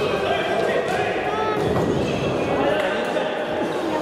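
A futsal ball being kicked and bouncing on a wooden sports-hall floor, with the thuds echoing in the hall and voices calling throughout.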